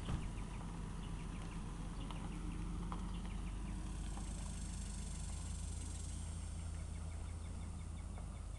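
Outdoor ambience of birds chirping, with many short repeated calls, over a low steady rumble. A high buzzing hiss swells in about halfway through.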